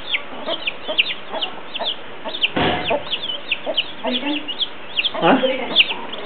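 Young chicks peeping continuously in quick, high, falling notes while a hen clucks low now and then. There is a brief noisy burst about halfway through.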